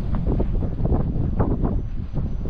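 Wind buffeting the microphone, a steady low rumble with uneven gusts.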